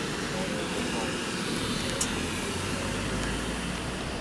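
Indistinct background voices over a steady low rumble.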